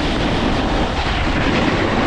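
Steady rushing scrape of skis running over spring snow, mixed with wind on the microphone.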